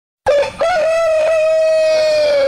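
Rooster crowing: a short opening note, a brief break, then one long held note.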